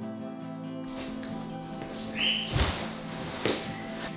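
Soft background music with steady sustained tones. From about a second in, the handling of fabric sofa cushions is heard under it, with a short squeak and then a dull thump past the halfway mark as a person sits down on the upholstered sofa.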